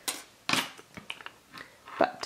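Brief handling noises as a lint roller is picked up and a clear silicone nail stamper is pressed onto its sticky sheet: a short rustle about half a second in, then a few faint ticks.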